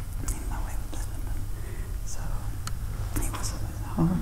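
A man whispering under his breath, quietly going over a memorised string of digits, with several short hissing 's' sounds, over a steady low hum.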